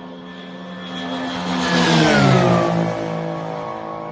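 A Yamaha Sidewinder–powered Vans RV-9 light aircraft flying past low. Its engine and propeller drone swells to a peak about two seconds in, drops in pitch as it passes, then fades away.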